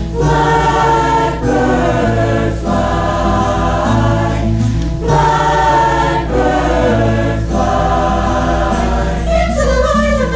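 Mixed high school choir singing sustained chords in short phrases that break about every second or so, with acoustic guitar accompaniment.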